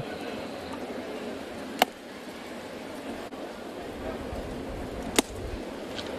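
Ballpark crowd murmur, with two sharp pops, one about two seconds in and one near the end.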